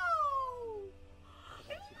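A high, drawn-out cry that falls steadily in pitch over about a second, followed by a few faint held tones.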